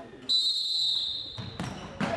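Referee's whistle: one long, shrill blast of just over a second, slightly dropping in pitch, the signal for the futsal free kick to be taken. A thud follows near the end as the ball is struck.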